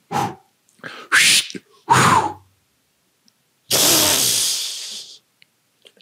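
Can of compressed air spraying: a hiss of about a second and a half that fades as it runs out, the loudest sound here. It comes after a few short breathy puffs.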